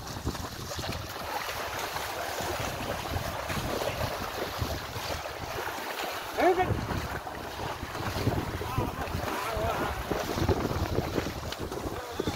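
Water buffalo and a loaded wooden cart wading and splashing through muddy field water, with wind buffeting the microphone. Short wavering vocal calls cut through, the loudest about six and a half seconds in and a few more later on.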